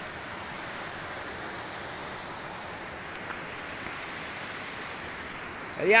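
Creek water rushing over and between rocks: a steady, even rush.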